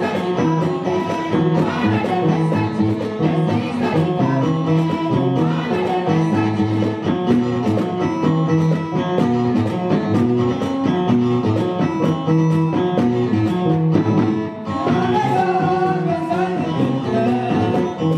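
Live music: a mixed choir of men's and women's voices singing over band accompaniment with guitar and a steady beat.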